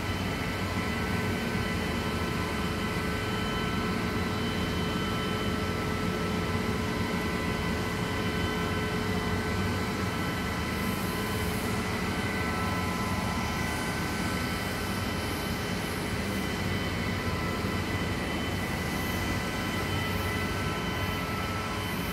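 Electric motor-driven pump running steadily: an even hum with several steady high-pitched whine tones over it.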